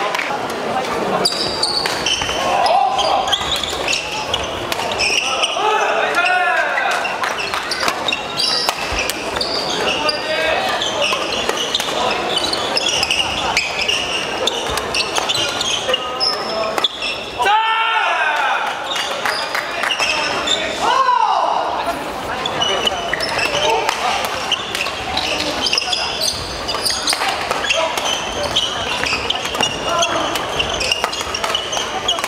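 Badminton doubles rallies in an echoing sports hall: sharp racket strikes on the shuttlecock and a few shoes squeaking on the court floor, over spectators' talking and calls.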